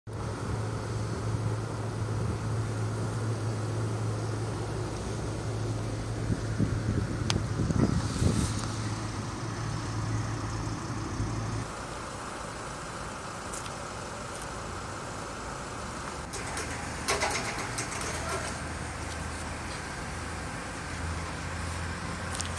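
A steady low engine hum over outdoor background noise; the hum drops to a lower pitch about halfway through, and a few short clicks and knocks come in the later part.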